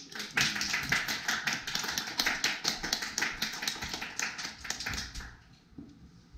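A small group of people clapping, individual claps audible, lasting about five seconds and stopping near the end.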